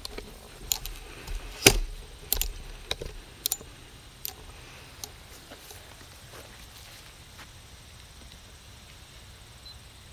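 Handling noise from a video camera being moved and set in place: a string of sharp clicks and knocks over the first few seconds, the loudest about two seconds in. After that only a faint steady outdoor background remains.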